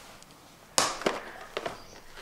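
Face-mask packets being handled: a sharp crackle about a second in, then a few lighter clicks.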